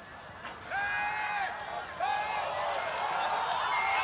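Faint field ambience at a night football game, with two drawn-out shouts from players or spectators, one about a second in and another about two seconds in.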